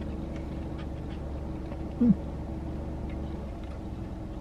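Steady low hum inside a car cabin, with a short 'mm' from a person tasting food about two seconds in.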